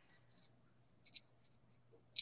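Very quiet room tone with a faint low hum, broken about a second in by two or three brief, soft clicks.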